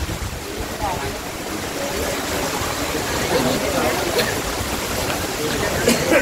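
Steady rain falling, an even hiss, with faint voices in the background.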